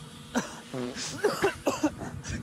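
Short bursts of a man's laughter, breathy chuckles in quick succession after a single spoken word.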